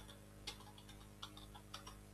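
Faint computer keyboard key presses: about five short clicks at irregular spacing as a password is typed.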